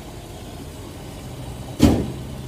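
Petrol pump dispensing fuel: a steady low hum of the dispenser running as fuel flows through the nozzle. A single loud thump comes near the end.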